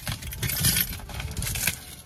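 A bunch of keys jingling and clinking in short irregular clicks as they are worked against the packing tape of a cardboard parcel to cut it open.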